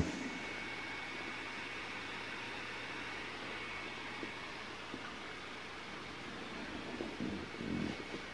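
Faint, steady hiss with a thin, steady high-pitched tone running through it, and a few soft low bumps near the end.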